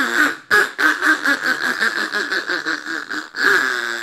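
Synthesized duck quacking from an AI-generated song. A wavering drawn-out call gives way to a rapid run of short quacks, about four a second, lasting nearly three seconds. Another long call begins near the end.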